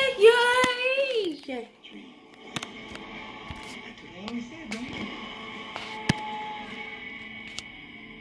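Movie trailer soundtrack played from a television and picked up in a small room: a loud voice with a wavering, gliding pitch for the first second and a half, then quiet sustained music with a few sharp clicks.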